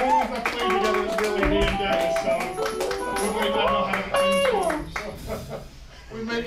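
Audience clapping, with voices and a few last instrument notes, as a band's song ends; it thins out near the end.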